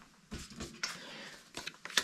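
Faint handling noise of craft supplies on a work mat: a few light clicks and a soft rustle for about a second in the middle as card stock and an ink blending brush are moved and set down.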